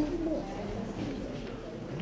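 Men's voices in a meeting room: a short exclamation at the start, then low murmured talk.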